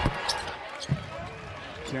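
A basketball bounced twice on a hardwood court at the free-throw line, about a second apart, over steady background noise.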